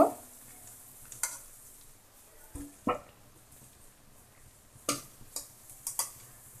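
Paruppu vadai deep-frying in hot oil in an aluminium kadai, a faint steady sizzle, broken by a few sharp metal clicks and taps as a perforated steel ladle scrapes the pan and lifts the vadais out.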